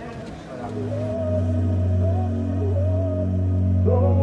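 Background music: a sustained low drone swells in about a second in, with a wavering melody over it, over faint voices at the start.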